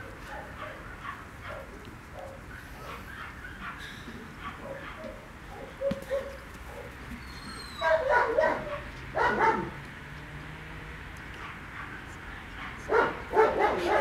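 A wolf-like dog vocalizing in rough play: scattered soft yips and whines at first, then loud yelping barks that drop in pitch about eight and nine and a half seconds in, and another loud burst of barks near the end.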